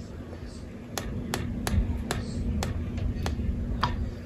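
A series of sharp clicks, about three a second from about a second in, from a fingertip tapping the Epson ET-16600 printer's touchscreen, over a low steady hum.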